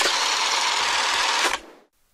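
A steady burst of noise with no clear pitch, lasting about a second and a half and then cutting off sharply.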